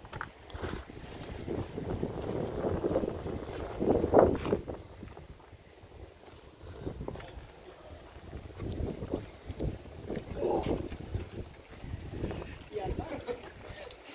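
Wind buffeting a phone microphone in uneven gusts, the strongest a few seconds in, with indistinct voices of people close by.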